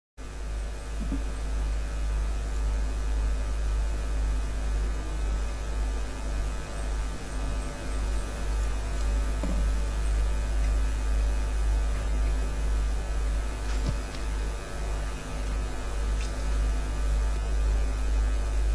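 Steady low electrical mains hum with a faint buzz above it, unbroken throughout, carried on the audio feed of the hall's sound system.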